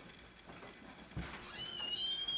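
A door squeaking on its hinges as it is pushed open: one high squeal that starts near the end, holds steady and then falls in pitch. A single soft thump comes just before it.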